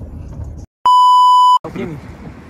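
A loud, steady electronic bleep on one pitch, about three-quarters of a second long, dropped in after a split second of dead silence and cut off sharply: an edited-in bleep tone. Before it comes the low rumble of a car's cabin.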